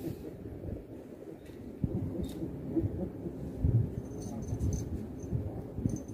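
Spinning fishing reel being cranked to wind in the line, heard faintly over a low, uneven rumble with a few dull thumps; light high ticks come in during the last two seconds.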